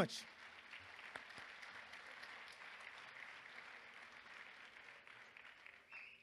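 Audience applauding, faint and steady, the clapping dying away at the end.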